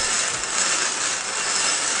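Paper raffle tickets being mixed in a raffle drum, a steady rustling scrape.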